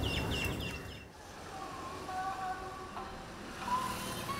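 Small birds chirping in quick repeated notes for about a second, then road traffic with vehicle horns sounding long, steady notes, two of them overlapping.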